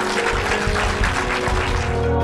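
Audience applauding as sustained closing music comes in. The clapping gives way to the music alone at the very end.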